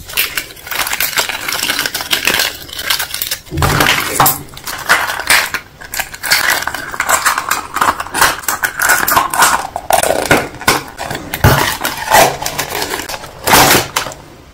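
Hands handling a blue plastic toy capsule and small cardboard jigsaw pieces, making a steady run of plastic clicks, rattles and rustles with a few heavier knocks.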